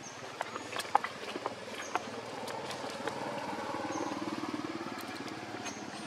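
A distant motor engine passing, its low buzz swelling and then fading over a few seconds, with a short high chirp repeating every second or two and a few faint clicks.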